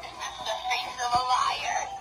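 Recorded voice and music playing from a Halloween clown animatronic's speaker, quieter than the narration around it.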